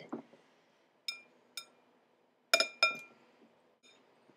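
A metal utensil clinking against a glass mixing bowl four times as bruschetta topping is scooped out: two light taps, then two louder ringing clinks about a second later.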